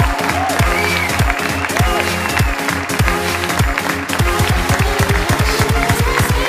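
Electronic dance music laid over the video: a heavy, falling-pitch kick drum on a steady beat with gliding synth tones, the kicks quickening into a fast roll over the last second or two as a build-up.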